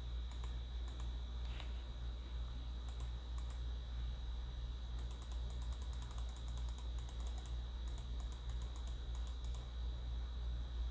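Light, quick clicking at a computer, coming in rapid runs especially in the second half. Under it run a steady low electrical hum and a faint high whine.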